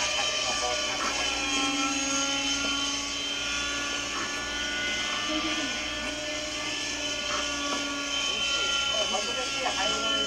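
The two-stroke glow engine of a radio-controlled model helicopter in flight, an O.S. 61 WC in a Kyosho Caliber 60 prototype. It runs as a steady whine of several tones whose pitch wavers slightly as the helicopter manoeuvres.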